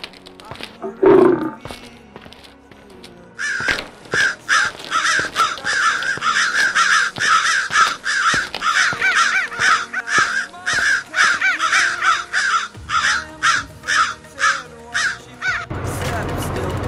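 A lion's roar about a second in, then a long run of repeated bird calls, about two a second, from around three seconds in until shortly before the end, over faint background music.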